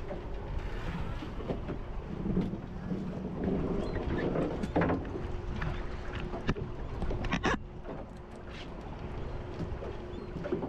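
Fishing boat at sea: wind on the microphone and water against the hull over a steady engine hum. A few sharp knocks come about six and a half and seven and a half seconds in.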